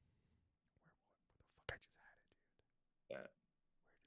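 Near silence on a voice call, broken by a few brief, faint voice sounds like whispering or a murmur, the clearest near the middle and about three seconds in.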